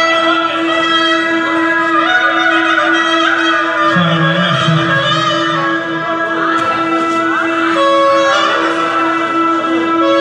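Live folk dance music led by an accordion playing a busy melody over a steady held drone note. A lower note joins for a moment about four seconds in.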